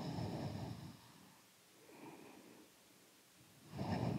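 A woman breathing audibly while holding a yoga pose: a strong breath at the start, a fainter one about two seconds in, and another strong breath near the end.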